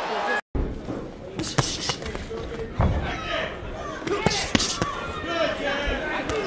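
Boxing-arena sound: a murmur of voices in a large hall, broken by several sharp thuds of gloved punches landing. The audio cuts out completely for a moment about half a second in.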